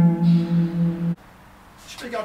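Headless electric guitar letting a single low note ring, its level pulsing about four times a second, then cut off suddenly just over a second in, followed by quiet room tone.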